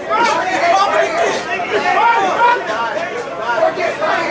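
Many voices of ringside spectators talking and calling out over one another.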